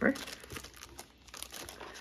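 Clear plastic cellophane packaging crinkling faintly in the hands as a pack of designer series paper is handled and slid back into its bag, in scattered small crackles.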